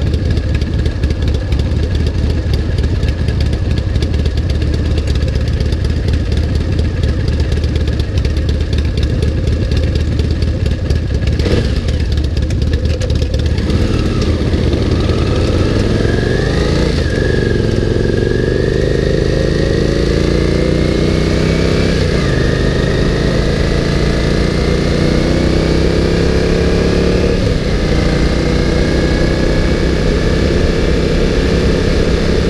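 Honda GL650 V-twin motorcycle engine idling steadily, with a short knock about eleven seconds in, then pulling away: its pitch climbs and drops back three times as it shifts up through the gears.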